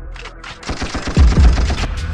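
Trap/drill beat from a music video: about half a second in, a rapid machine-gun-fire sound effect starts over deep 808 bass notes that slide downward in pitch.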